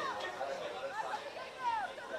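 Footballers' voices calling and shouting across the pitch, too far off to make out words, with one louder falling call near the end.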